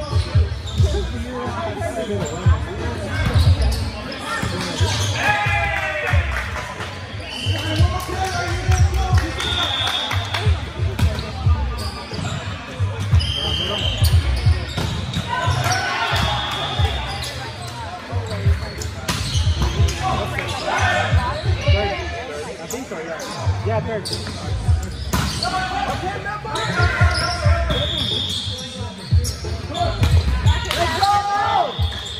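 Indoor volleyball being played in a large gym: repeated thuds of the ball being hit and of players' feet on the court, short high sneaker squeaks every few seconds, and players shouting to each other, all echoing in the hall.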